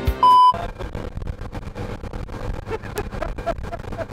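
A loud, short electronic beep at one steady pitch about a quarter second in, then the steady rushing noise of a speedboat under way, its Mercury outboard motor running under wind and spray.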